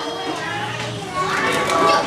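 Schoolchildren's voices chattering over one another in a classroom, growing louder in the second half.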